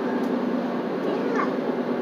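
Steady road and engine noise inside a moving car's cabin, with one short high gliding sound about a second and a half in.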